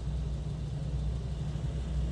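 A steady low hum or rumble with no other events.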